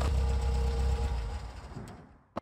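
Car engine idling as a sound effect: a steady low rumble with a faint even hum, dying away near the end.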